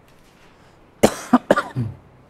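A man coughing, a quick run of three or four coughs starting about a second in, ending with a short throat-clearing sound.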